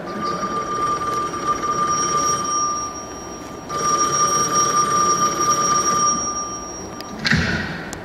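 Telephone ringing twice, each ring a steady electronic tone about two and a half seconds long with a short gap between, in the opening of a recorded norteño corrido. A short clatter follows near the end, as the call is answered.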